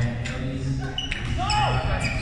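Badminton rally on a hardwood sports-hall floor: sharp squeaks from players' court shoes as they move and turn, with a crisp click of a racket striking the shuttlecock about a second in.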